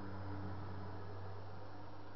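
Steady low hum with an even hiss beneath it: room tone picked up by the camera's microphone.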